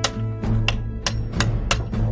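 Knocking at the front door: a quick series of sharp raps, about a third of a second apart in the second half.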